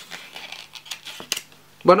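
A few light metallic clicks and clinks as a metal-bodied spy-camera pen is handled in the fingers.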